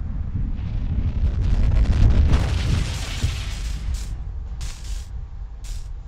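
Added crash sound effect of a satellite slamming into the floor: a low rumble swells to a loud impact about two seconds in, then a roaring hiss dies away, broken by a few sharp crackles near the end.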